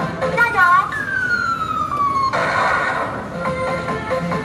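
Claw machine's electronic sound effects: a short wavering tone, then a long falling tone lasting about a second and a half that cuts off abruptly, followed by a brief noisy burst, over background arcade music.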